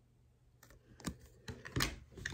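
A few light clicks and taps from an oracle card and fingers being handled close to the microphone, after about a second of near silence.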